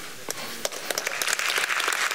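Audience applauding: a few scattered claps at first, growing dense and steady about a second in.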